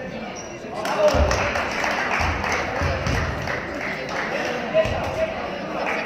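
A basketball bouncing on a gym floor several times after a free-throw shot, a few irregular thuds under voices in the hall.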